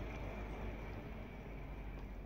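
Quiet steady background hiss with a low hum, with no distinct sound standing out: room tone.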